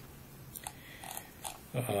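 Quiet room with four faint, short clicks spread about half a second apart, then a man's voice beginning with a hesitant "um" near the end.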